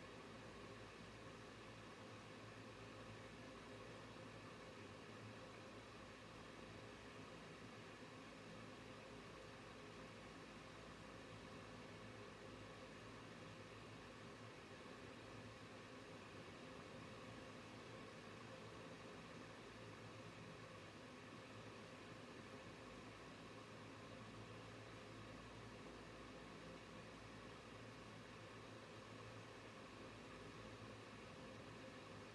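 Near silence: room tone, a faint steady hum and hiss.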